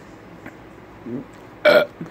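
A person burping once, short and loud, about one and a half seconds in.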